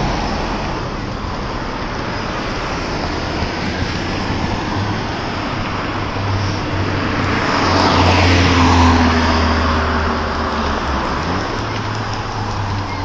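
City street traffic: cars driving past, with one passing close and loudest about eight seconds in, its sound swelling and then falling away.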